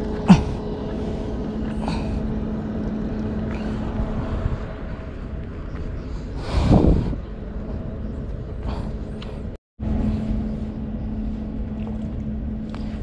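A steady low motor hum, with a sharp click just after the start and a short, louder rush of noise about seven seconds in; the sound cuts out for a moment near the end.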